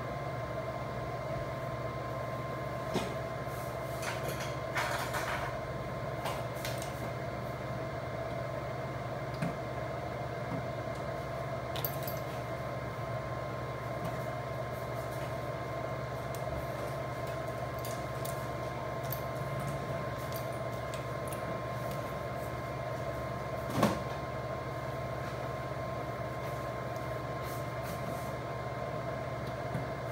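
Steady low hum with a faint thin high tone, a bench's room background, broken by a few light clicks and one sharper knock well into the stretch.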